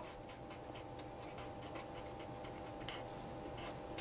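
Faint scratching and light ticks of a felt-tip marker writing on paper, over a faint steady hum.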